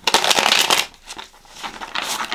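A deck of tarot cards being shuffled: a dense rapid flutter of cards for about the first second, then lighter scattered ticks, with another flurry starting near the end.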